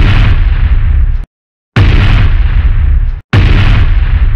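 Heavy cinematic boom sound effects: sudden hits about a second and a half apart, each with a deep rumble that lasts over a second and cuts off abruptly.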